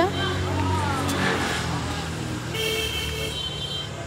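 Road traffic running steadily, with a vehicle horn sounding once for under a second a little past halfway.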